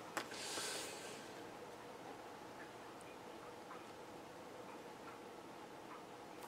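Faint room tone, with a brief soft hiss in the first second.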